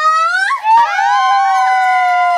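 Several young women cheering together in one long, high-pitched held yell. One voice rises at the start, and the others join in under a second in, all held and sliding slightly down in pitch.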